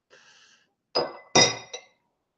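A glass whisky dropper clinking against glass: three light clinks about a second in, each with a short ringing tone, the middle one loudest.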